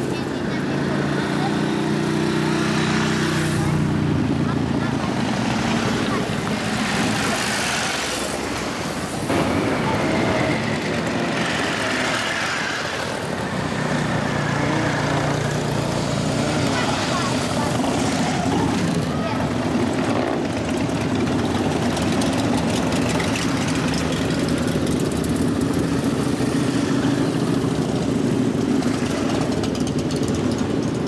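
A procession of motorcycles, largely V-twin cruisers, riding slowly past one after another with their engines running steadily at low revs.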